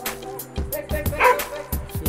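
A dog barking about a second in, over music with a steady drum beat.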